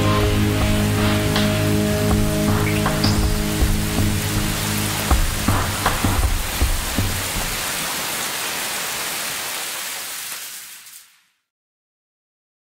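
The last chord of a pop-rock song held over a wash of cymbals, with a few final drum hits about halfway through, then fading out to silence near the end.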